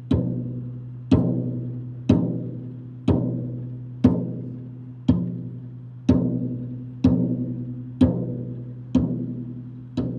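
Marching bass drum struck with a mallet in a slow, steady beat, about one stroke a second. Each stroke rings low and fades before the next.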